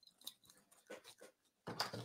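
Faint, scattered soft clicks and light scrapes of a palette knife picking up paint from a palette.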